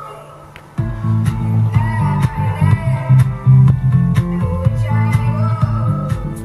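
Rock music with guitar, bass and singing playing through swivel-mounted Yamaha speakers with built-in subwoofers. After a quieter opening, heavy bass and the full band come in suddenly under a second in.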